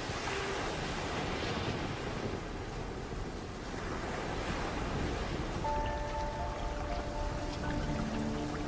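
Rough sea: a steady rush of surf as storm waves break and surge. Sustained music notes come in about two-thirds of the way through.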